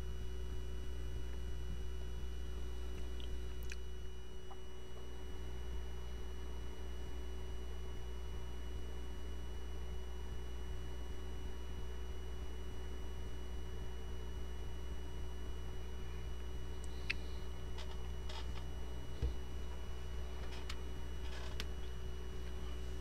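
Steady low hum with a few faint fixed tones over it, the background noise of a desk microphone, with a few faint clicks near the end.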